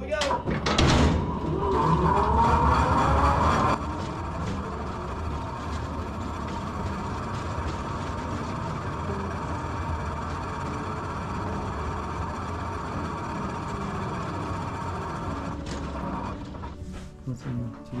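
Mine tour rail car running along its track through the tunnel. For the first four seconds a loud squeal with gliding pitches, the wheels grinding on the rails. After that comes a steady running noise with a faint high whine, which stops about two seconds before the end as the car comes to a halt.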